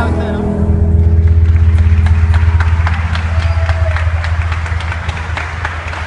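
The last held chord of a Colombian llanera ensemble (harp, cuatro, bass) rings on and dies away about halfway through, over a steady low bass hum. Scattered audience clapping and crowd voices set in as the piece ends.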